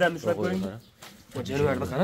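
A man's low voice speaking in two short stretches, with a brief pause about a second in.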